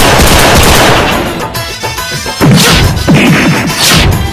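Action film trailer soundtrack: a burst of rifle fire over music, followed by three loud hits, each with a falling tone after it.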